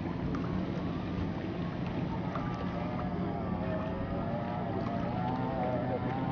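Distant Formula 1 racing powerboats' Mercury V6 outboard engines running flat out, a steady wavering high whine over a lower drone.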